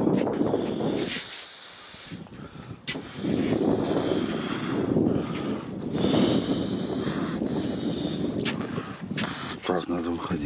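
A wooden swing-boat rocking back and forth. A rush of air on the microphone swells and fades with each swing, about every two to three seconds, and short high squeaks come from the swing.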